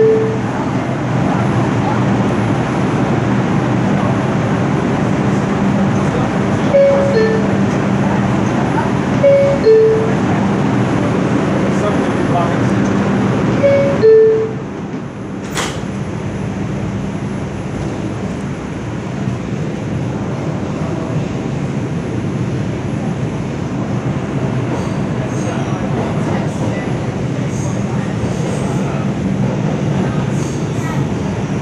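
Inside an NYC subway R142 car, a steady rumble with a two-note falling door chime sounding four times in the first half. After the last chime, about halfway through, the car goes a little quieter and a single sharp click follows.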